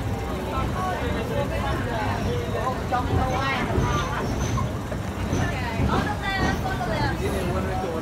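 Passengers talking and chattering in a carriage, several voices at once, over the low steady rumble of the moving carriage.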